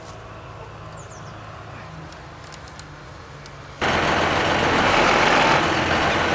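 Tractor engine idling, a steady low hum that steps up slightly in pitch about two seconds in. Near four seconds in, the sound jumps abruptly to a much louder rushing noise.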